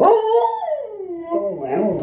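Siberian husky howling and 'talking': one long call that slides down in pitch, then a shorter call that rises and falls near the end.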